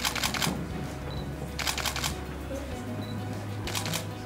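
Rapid bursts of camera shutter clicks, three short volleys about a second and a half to two seconds apart, over quiet background music.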